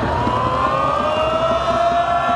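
A group of voices holding one long drawn-out cry together, its pitch slowly rising, over stadium crowd noise.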